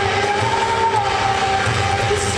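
A rock band playing live, heard loud from the audience, with a long held note that dips slightly in pitch about halfway through over a steady pulse of bass and drums.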